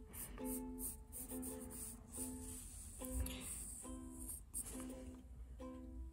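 Quiet background music of plucked string notes, a ukulele-like tune with roughly one or two notes a second.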